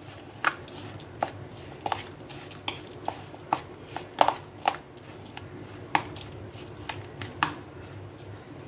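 A steel spoon stirring grated coconut in a plastic bowl, clicking and scraping against the bowl in sharp, irregular taps about twice a second.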